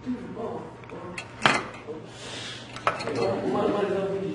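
Several sharp clicks and light clinks of a small circuit board fitted with LEDs being handled and set down on a table, the loudest about one and a half seconds in. A voice talks in the background.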